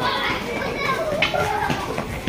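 Background chatter of several people, children's voices among them, none close or clear.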